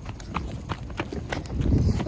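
Quick footsteps on pavement: a series of light knocks, about three a second, then a low rumble near the end.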